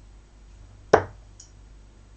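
A 24 g steel-tip dart thudding into a bristle dartboard once, about a second in, followed by a faint tick half a second later.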